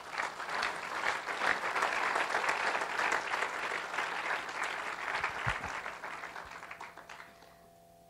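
Church congregation applauding, building over the first couple of seconds and fading out near the end.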